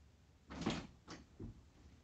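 A room door being opened: a sharp clack about half a second in, then two lighter knocks.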